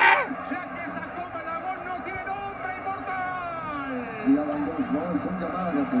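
Indistinct men's voices talking, with a little background chatter.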